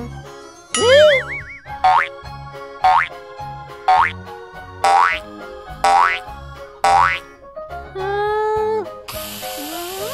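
Cartoon sound effects over children's background music: a wobbling boing about a second in, then six quick rising zips about a second apart, and a hissing burst near the end.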